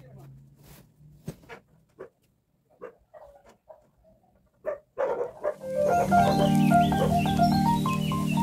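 Background music fades in about five and a half seconds in: a mellow instrumental with held chords and a stepping melody. Before it, only faint scattered knocks and small handling sounds.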